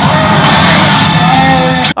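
Loud movie-trailer soundtrack, dense dramatic music with action sound, played through a 40 W AKIXNO two-channel soundbar; it cuts off suddenly near the end.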